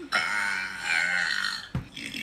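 One long burp lasting about a second and a half, followed near the end by a brief low thump.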